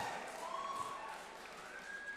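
A thump from a lectern microphone being grabbed and adjusted, then the low, fading noise of a large hall.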